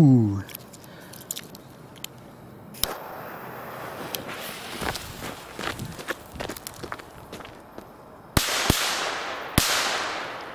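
A firecracker fuse hissing for a few seconds, then three Keller Pyro Cracker firecrackers set off as a bundle of three going off: two bangs close together near the end and a third about a second later, each followed by a long echo.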